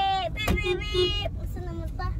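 Steady low road rumble inside a moving car's cabin. Over it a child's high held sung note breaks off just after the start, followed by a click about half a second in and a few short high vocal sounds.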